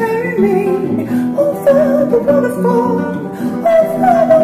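A woman singing held, gently bending notes over an acoustic guitar, in a folk ballad.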